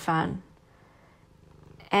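A narrator's reading voice ends a word, pauses for about a second, then lets out a brief creaky rattle that leads into an "uh" before the next sentence.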